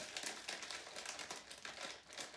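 Plastic pepperoni package crinkling in the hands with irregular rustling crackles as slices are pulled out of it.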